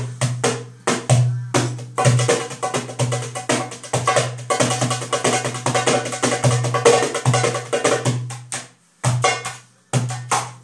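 Darbuka (tarabană goblet drum) played by hand in a fast rhythm: deep ringing bass strokes with quick sharp strokes between them, thickening into a dense roll in the middle. It stops briefly near the end, then starts again.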